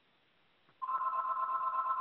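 A telephone tone comes through a participant's phone line into the conference audio: a steady electronic tone of two close pitches that starts about a second in and holds. It is the sign of a call coming in on that dialed-in line.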